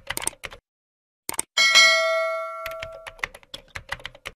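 Subscribe end-screen sound effects: rapid typewriter-style clicks as text types out, then a bright bell chime that rings and fades over about a second and a half, followed by more quick clicks.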